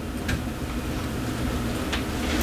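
Steady low hum of room background noise in a pause between spoken sentences.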